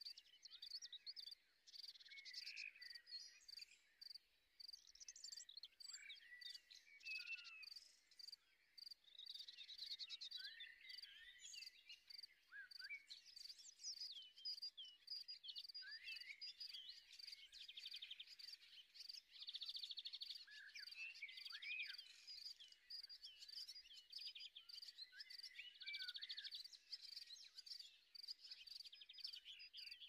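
Faint nature ambience: many small birds chirping and calling throughout, over a steady high trilling of insects.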